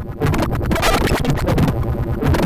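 Gotharman's anAmoNo X synthesizer playing a harsh, gritty, ring-modulated patch, choppy and noisy, with its sound changing as it is tweaked by hand.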